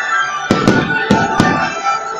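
Four sharp firecracker bangs within about a second, over steady music with held tones.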